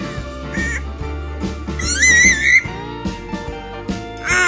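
Background music, with an infant's short, high-pitched, wavering squeal about two seconds in, louder than the music.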